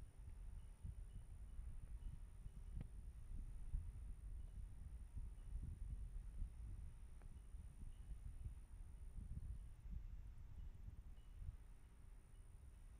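Faint, uneven low rumble of wind buffeting an outdoor microphone, with a faint steady high-pitched whine behind it.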